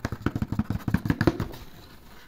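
Clear plastic blister packaging of a boxed toy set crackling and clicking under handling fingers: a quick, irregular run of clicks that dies down about a second and a half in.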